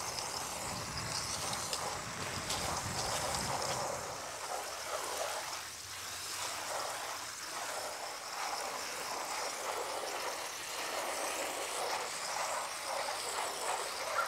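Water spraying steadily from a hose watering wand onto plastic trays of seedlings.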